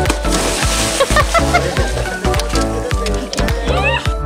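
Upbeat background music with a steady beat. Under it, early in the first second, a brief splash as a scuba diver in full gear jumps into the sea.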